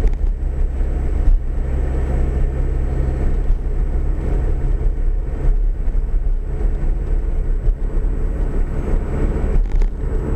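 Steady low rumble of a vehicle driving on the road, engine and tyre noise heard from inside the cab, with an engine hum that drops away about six seconds in.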